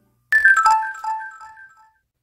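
A short edited-in chime jingle: a quick run of bright bell-like notes stepping down in pitch, starting suddenly about a third of a second in and ringing away.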